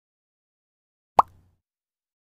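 A single short 'plop' sound effect from an animated logo intro: one quick pop whose pitch sweeps upward, a little over a second in.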